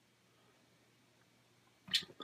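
Near silence: faint room tone with a low hum. A short, sharp breath is drawn just before the end.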